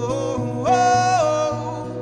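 Male voice singing a gospel song live over acoustic guitar accompaniment, stepping up to a higher held note about two-thirds of a second in.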